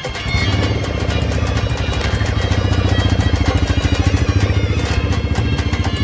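A motorcycle engine fires up just after the start and runs with a fast, even beat, under background music.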